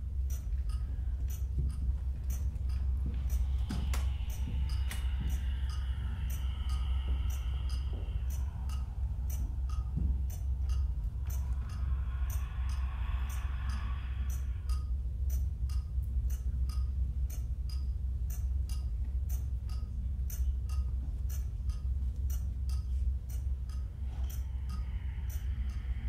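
Underwater hydrophone recording: a steady low rumble under a regular train of sharp clicks, about two a second, with faint higher tones drifting in twice.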